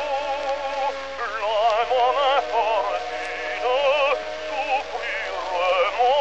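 Old gramophone recording of a French tenor singing a serenade with wide vibrato, held notes and quick turns, over a thin accompaniment.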